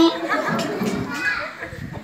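Children's voices chattering in the background in a large, echoing hall, fading toward the end.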